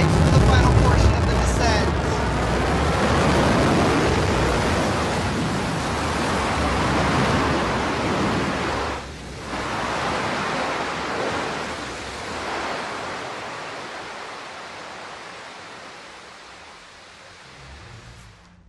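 Blue Origin New Shepard booster's BE-3 hydrogen-fuelled rocket engine firing for its landing burn: a steady, noisy roar with deep rumble. It is loudest at the start, dips briefly about nine seconds in, then fades gradually as the booster settles onto the pad.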